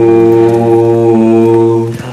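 A male voice, unaccompanied, holding one long sung note at a steady low pitch. It cuts off just before the end.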